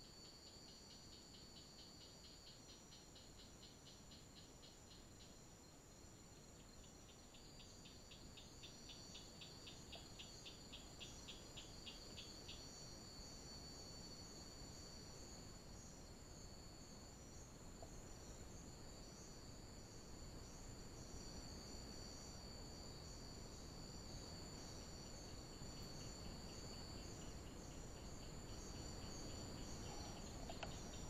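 A faint chorus of night crickets: a steady high-pitched chirring, with a pulsed chirping trill that comes and goes during the first dozen seconds and returns near the end.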